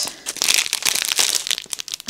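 Clear plastic wrapping around a bundle of diamond-painting drill bags crinkling and crackling as it is handled, in a dense run of small crackles.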